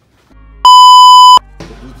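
A loud censor bleep: one steady, high electronic tone, starting a little over half a second in and cutting off sharply after about three-quarters of a second.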